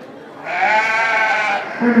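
A Dorper sheep bleating once, a single call of just over a second starting about half a second in, its pitch rising a little and then falling.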